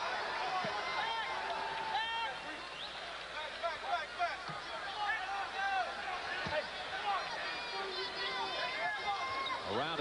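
Basketball arena crowd noise during live play, with sneakers squeaking sharply on the hardwood court again and again and an occasional ball bounce.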